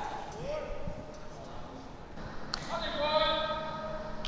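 Faint voices of players calling out in a large hall, with one light knock about two and a half seconds in.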